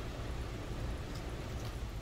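Steady low room noise with a low rumble, and two faint crunches of a man biting and chewing a stalk of Chinese broccoli, about a second in and again a little later.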